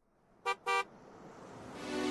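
Two quick car-horn toots in a pop song's intro, close together and about a quarter of a second apart. After them a swell of sound rises steadily in level.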